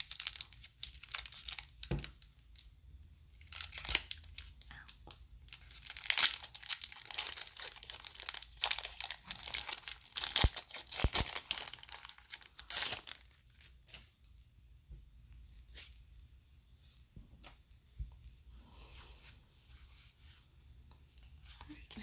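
Foil Pokémon booster pack wrapper being torn open and crinkled, in repeated bursts of sharp tearing and rustling over the first dozen seconds. After that it goes quieter, with scattered small clicks and rustles.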